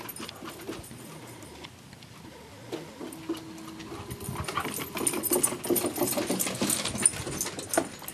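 Dogs moving about, with scattered clicks and rustles that grow busier and louder in the second half, and a short steady whine about three seconds in.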